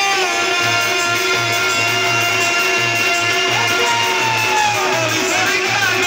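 Live qawwali music: a harmonium and a male voice hold long notes over a steady drum beat. Around the middle a sung phrase slides down in pitch.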